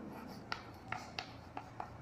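Chalk writing on a chalkboard: faint, irregular taps and short scrapes as letters are written, about five distinct clicks in two seconds.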